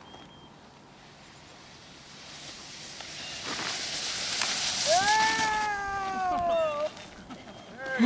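Snowboard hissing and scraping over snow as the rider slides downhill, building from about two seconds in. Midway a person lets out one long yell that rises and then slowly falls in pitch.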